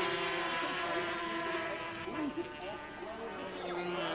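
250cc two-stroke Grand Prix racing motorcycles running at high revs: a steady, layered engine note that fades through the middle and grows again near the end, with brief pitch shifts about halfway through.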